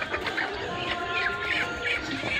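Backyard chickens clucking and chirping in short, quick calls over background music with a few held notes.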